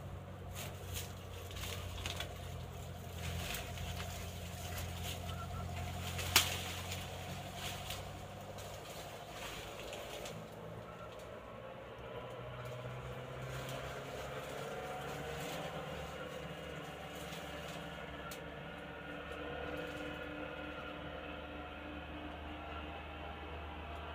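Forest ambience with faint bird calls over a steady low hum. Scattered small clicks and rustles fall in the first half, with one sharp, loud click about six seconds in.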